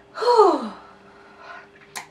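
A woman's short voiced 'ahh' sigh just after a sip from a mug, its pitch sliding steeply down over about half a second.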